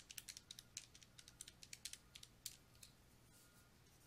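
Faint, quick, irregular small clicks, like keys or buttons being pressed, stopping about three seconds in.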